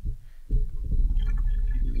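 AeroPress coffee maker being pressed down into a mug. A low, steady rumble begins about half a second in.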